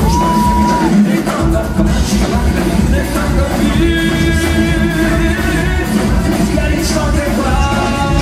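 A live pop-rock band playing, with a male lead singer singing over drums, electric guitars and keyboards.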